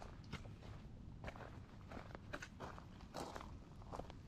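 A hiker's footsteps on a dirt trail, about two steps a second, over a low rumble.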